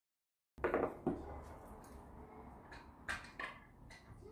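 After a brief dead silence, handling noise of a jar of wood stain: its screw lid being twisted off and set down on the table, with a few short knocks about half a second in and again about three seconds in.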